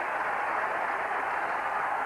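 Large stadium crowd, a steady wash of noise from many spectators during a high jumper's run-up.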